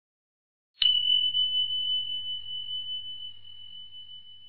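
A single notification-bell ding sound effect about a second in: one clear high tone that strikes suddenly and rings on, slowly fading.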